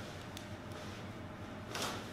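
Quiet room tone with a faint click about a third of a second in and a short soft rush of noise near the end.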